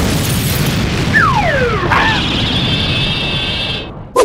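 Cartoon explosion sound effect: the rumble of a blast carries on after the initial bang, with a couple of high falling whistles about a second in and a steady high ringing tone joining about halfway, before it all cuts off near the end.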